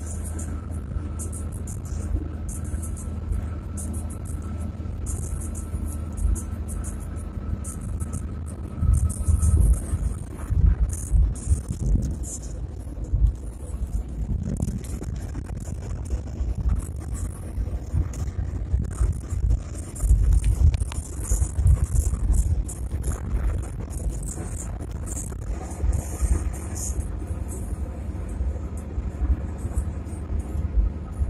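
A car driving on a highway: a low, uneven road rumble with surges, mixed with background music.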